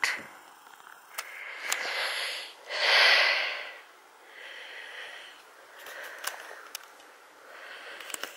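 Breathy puffing close to the microphone, loudest in one second-long whoosh about three seconds in, with a few faint clicks.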